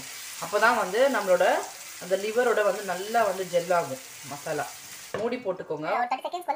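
Chopped onions sizzling as they fry in oil in a nonstick pan, stirred with a wooden spatula as they soften toward brown. The sizzle cuts off suddenly near the end.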